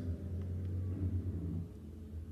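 Low, steady rumble of a vehicle's cab with the engine running, heard from inside the cab.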